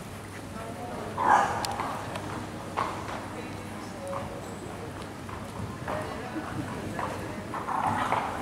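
Hoofbeats of a grey gelding cantering on the sand footing of an indoor arena, with voices in the background that are loudest in a brief burst about a second in.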